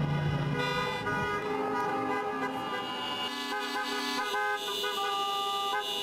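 Many car and truck horns honking at once, several held tones at different pitches overlapping, with the set of horns changing about halfway through.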